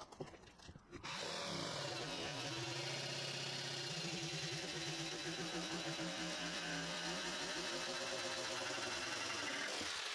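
Corded Ryobi jigsaw cutting through a white-faced board. The saw starts about a second in, runs steadily through the cut, and stops near the end.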